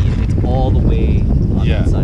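Wind buffeting an action-camera microphone on an open chairlift, a loud, steady low rumble, with a man's voice breaking through in short fragments.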